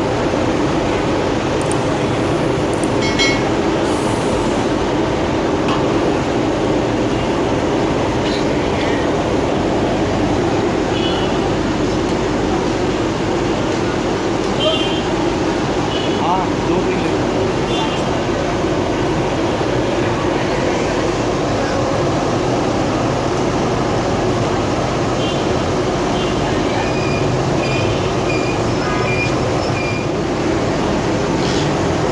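Samosas deep-frying in a large karahi of hot oil, a loud steady sizzle, mixed with street noise.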